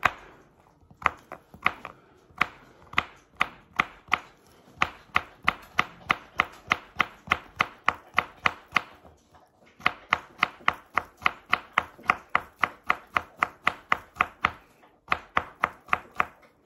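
Kitchen knife slicing a zucchini finely on a cutting board: sharp taps of the blade striking the board, a few spaced out at first, then quick runs of about three cuts a second, with short pauses near the middle and just before the end.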